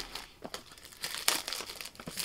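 Clear plastic wrap crinkling as it is torn and pulled off a small cardboard product box, after a light tap about half a second in.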